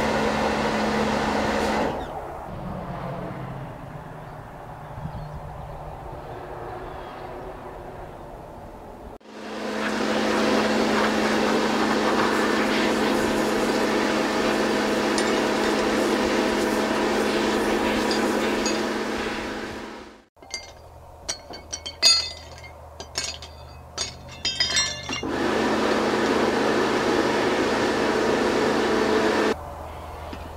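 Pressure washer running, its pump hum and water jet spray loud and steady, starting and stopping abruptly several times. About two-thirds of the way through, a few seconds of sharp metal clinks and knocks as metal items are handled and knocked together.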